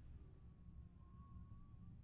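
Near silence: faint low room hum, with a faint thin steady tone through most of it.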